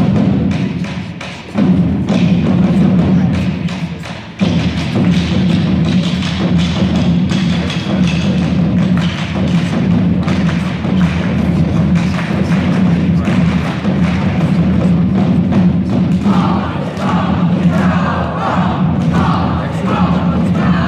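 An indoor percussion ensemble playing its show: a steady low sustained tone under frequent drum hits, with sudden loud entries about one and a half and four and a half seconds in. Near the end a wavering higher part joins.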